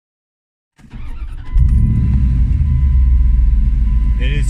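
Steady low rumble inside a parked car's cabin: the engine idling with the heater fan on full blast. It cuts in suddenly about a second in and grows louder half a second later.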